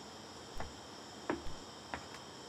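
Crickets singing in a steady chorus of several high, unbroken tones, with three short, faint knocks through it, the middle one the loudest.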